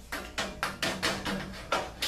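Steel tape measure blade clicking and tapping against sheet metal as it is run out across a duct opening: a quick, uneven string of about eight sharp metallic clicks.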